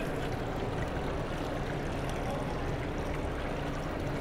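Steady trickle of water circulating in a large fish display tank, with a low steady hum underneath.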